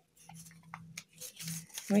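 Stiff folded paper crinkling faintly, with a few small crackles, as it is strained and torn by hand; the paper is hard to tear.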